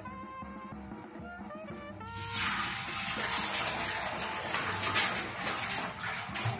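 Hot cooking oil in a pot starts to sizzle and spatter about two seconds in, as eggs go in to fry, and keeps up a dense crackling hiss. Soft guitar music plays underneath.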